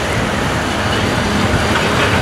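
Steady rush of wind and road noise from a moving Hero Splendor Plus motorcycle, with a green city bus passing close alongside.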